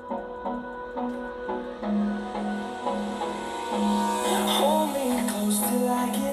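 Electronic dance track playing through a laptop's built-in speakers (Asus Vivobook X1500EA) in a speaker sound test, with a pulsing bass line and a swell building in the upper range from about two seconds in.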